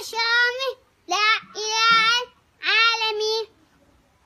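A young boy's voice chanting in a high, sung tone: four drawn-out phrases, each held at a steady pitch, with short breaks between them.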